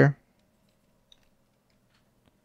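A few faint, scattered clicks from a computer as a search term is typed into an app, over near silence.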